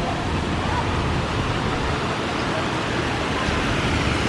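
Steady rushing of a fountain's water spilling from a row of spouts into its pool, with city traffic in the background.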